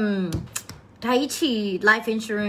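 A woman speaking. About half a second in her voice breaks off for a short pause, and a few light clicks sound in it.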